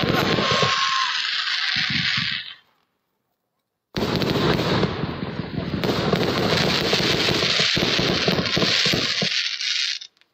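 Aerial fireworks going off, a dense, continuous crackle of many bursts. The sound cuts out completely for about a second and a half a little way in, then the crackling resumes.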